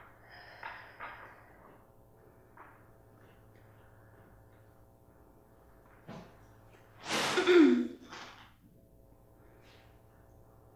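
A woman's effortful breathing during side-lying leg lifts: soft breaths in the first couple of seconds, then a loud voiced exhale with a falling pitch about seven seconds in, over a faint steady hum. A short click comes just before the exhale.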